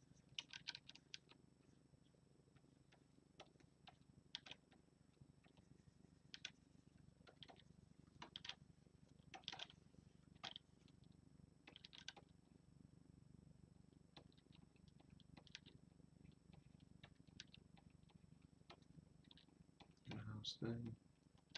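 Near silence: faint, irregular light clicks and taps of a stylus working on a Wacom Cintiq pen display, over a low steady hum.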